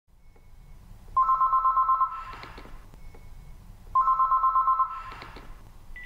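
Electronic telephone ringer ringing twice for an incoming call, each ring about a second of a fast-pulsing two-tone trill, with a room echo trailing after each ring.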